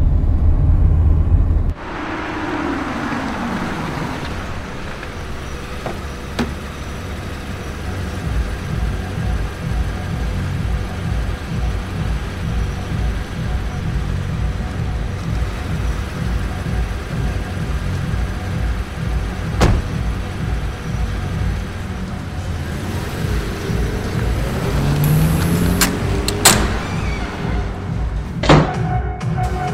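Film soundtrack at night: a car's engine rumbling loudly, then a car driving past with its pitch falling. After that comes a low pulsing music score with a few sharp clicks.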